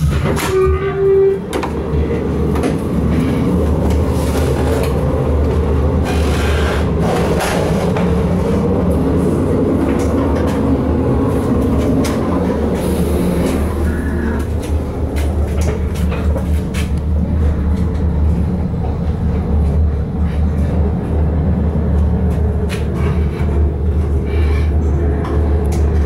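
Cabin noise of a ČD class 814.2 RegioNova diesel railcar running along the line: a steady, loud low drone of the engine and running gear mixed with wheel-on-rail noise and occasional clicks and rattles. A short steady tone sounds briefly about a second in.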